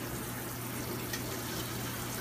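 Kitchen tap running steadily into a stainless steel sink, with a low steady hum beneath.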